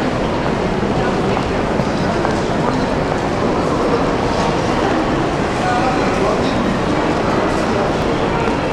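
Crowd of people walking and talking, their voices blending into a steady, loud hubbub with no single voice standing out.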